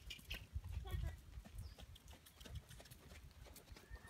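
Hoofbeats of a horse cantering on sand arena footing, heard as a run of soft low thuds.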